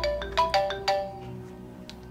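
A mobile phone rings with a chiming ringtone melody for an incoming call. The melody stops about a second in, with soft background music underneath.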